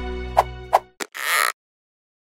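Intro jingle music fading out, with two short pitched blips. It ends in a click and a brief whoosh, then cuts to silence for the last half second.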